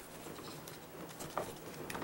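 Plastic CD jewel cases being handled and swapped: a few light clicks and taps, with soft rustling in between.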